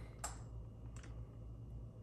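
Two faint clicks from a clear plastic lure package being handled in the fingers, over a low steady room hum.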